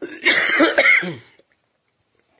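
A person coughing: a short fit of several coughs in quick succession, lasting about a second and a half.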